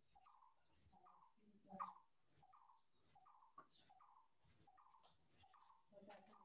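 Near silence with a faint, short chirp repeating at a steady pace, about every three-quarters of a second.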